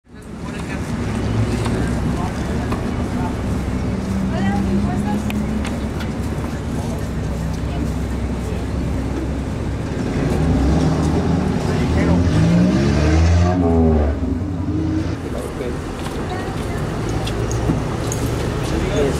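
Street traffic noise with voices in the background. About twelve seconds in, a vehicle engine rises and falls in pitch as it passes, then fades.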